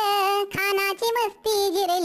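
A high, pitch-shifted cartoon-cat voice singing a line of a Marathi patriotic song. It holds notes in two phrases, with short breaks about half a second and a second and a half in.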